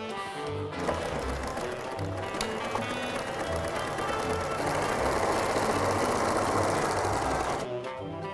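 Domestic electric sewing machine running steadily, stitching metallic fabric, over background music with a steady beat. The machine starts about a second in, gets louder in the second half and stops just before the end.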